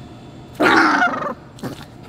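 A small puppy giving one short growl, under a second long, while a hand pulls a scrap of paper from its mouth: it is guarding the paper.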